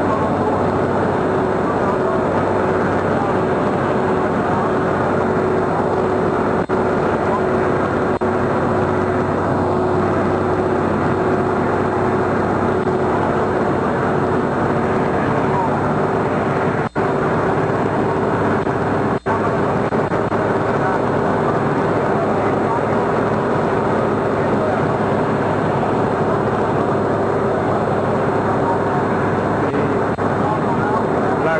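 Vehicle engine running steadily under way, heard from on board, with a constant steady tone over the engine noise. The sound cuts out twice for an instant in the second half.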